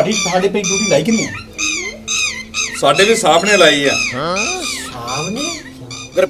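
A voice wailing in repeated rising-and-falling cries, with background music.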